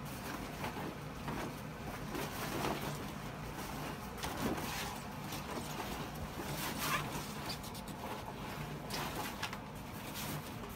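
Heavy fabric grill cover rustling and brushing against the steel barrel of an offset smoker as it is pulled down and smoothed over it, in an uneven series of short swishes.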